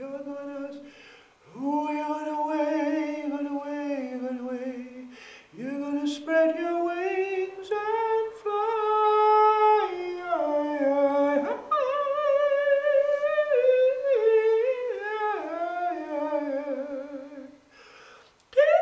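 A man singing a wordless melody in long drawn-out phrases, with vibrato on the held notes and short breaths between phrases. The voice rings in a small, resonant room.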